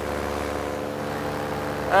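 Two-stroke paramotor engine and propeller running steadily in flight, a constant drone of even tones that holds one pitch.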